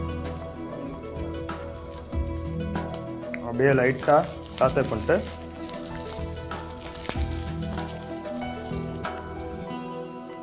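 Chopped ginger and onion sizzling in oil in a nonstick frying pan while being stirred with a spatula, under steady background music. A voice sounds briefly about three and a half to five seconds in.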